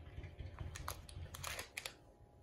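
Faint handling noise of a doll being pressed into slime in a plastic toy pool: a low rumble with a few small clicks.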